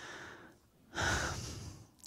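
A person breathing: two long breaths, the second starting about a second in and louder than the first.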